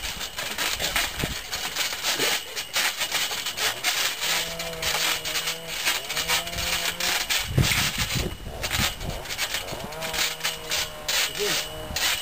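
Trampoline creaking and rasping in a quick, repeated rhythm as people bounce on it.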